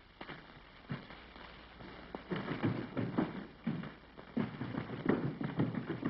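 Hurried footsteps: a run of thumps that starts faint and grows louder and quicker from about two seconds in.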